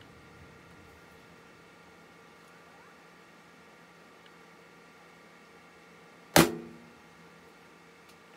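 One sharp, loud knock about six seconds in, dying away within half a second: a blow to the Macintosh PowerBook 165c to free its hard drive, which is stuck by stiction.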